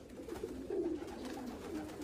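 Several racing pigeons cooing in their loft, low coos overlapping one another.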